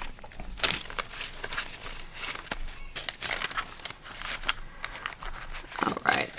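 Paper banknotes being counted by hand: a quick, irregular run of crisp rustles, flicks and snaps as the bills are peeled off a stack one by one.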